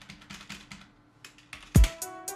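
Faint computer mouse and keyboard clicks, then about three-quarters of the way in a trap beat starts playing back out of the recording software, opening with one loud, deep kick drum hit.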